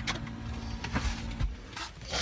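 Low rumble inside a car, with a faint steady hum in the first part and a few small clicks and knocks of a phone being handled.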